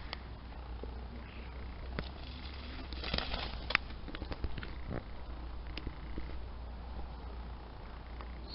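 Steady low rumble of wind and handling on the microphone, with scattered light clicks and taps, the sharpest just before four seconds in.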